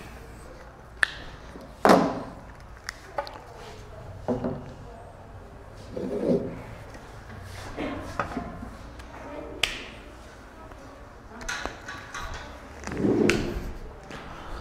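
Scattered knocks and clicks with a few dull thumps, the sound of objects being handled and set down. The loudest thumps come about two seconds in and near the end.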